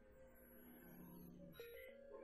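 Near silence, with faint steady background music.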